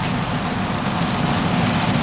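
Steady hiss with a low hum underneath: the background noise of a television broadcast recording, with no distinct event.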